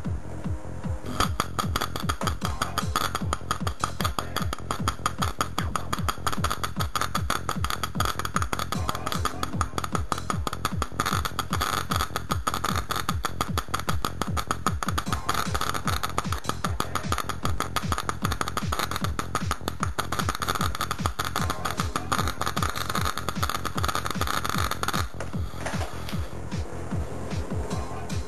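High-voltage arc between ferrocerium electrodes in a sodium carbonate electrolyte, making a dense, rapid crackling buzz over a steady hum from the supply. The crackling starts about a second in and stops a few seconds before the end, leaving only the hum.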